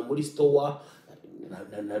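A man's voice making low, hummed, moaning sounds, broken by a short pause about a second in.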